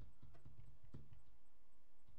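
A handful of irregular hollow knocks and clicks, about five in the first second or so.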